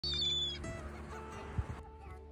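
A gull gives one short, high cry near the start, falling slightly in pitch, over soft music. A brief low thump comes just before the background hiss cuts off.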